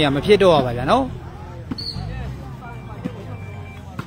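A man's loud, drawn-out shouting voice rising and falling for about the first second, then quieter spectator chatter. Near the end a sharp slap, a volleyball being struck at the net.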